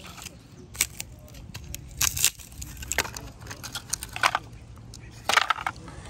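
Wood fire crackling in the firebox of a metal camp stove: irregular sharp pops and crackles, about half a dozen, over a low steady background.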